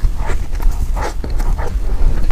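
Close-miked biting and chewing of soft chocolate mousse cake: wet mouth sounds and small smacks, several in quick succession.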